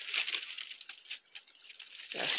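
Light rustling and crackling of dry leaf litter and leaves brushing past, with a few soft crunches of steps, fading toward the middle.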